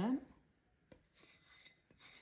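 End of a spoken word, then a light click about a second in and a faint, brief rustle of ground spices being scraped off a plate into a glass bowl.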